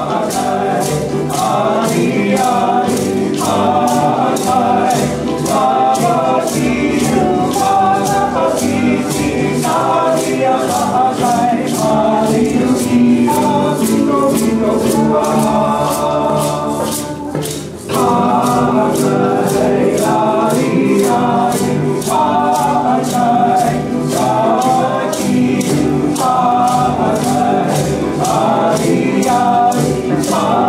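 Live group singing with a band, over a steady, quick rattling percussion beat. The music drops out for a moment a little past halfway, then carries on.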